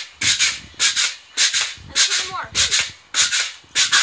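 Pogo stick bouncing on a concrete sidewalk, each jump a short noisy clatter of the spring and tip on the pavement, about seven jumps at a steady pace of just under two a second.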